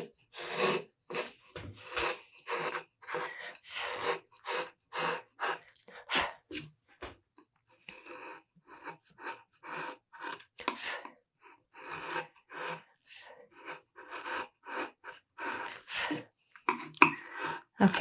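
A #1 (flat) 14 mm carving chisel pushed by hand through mahogany in a quick series of short paring cuts, about two a second. The cuts are stronger in the first several seconds and lighter after that.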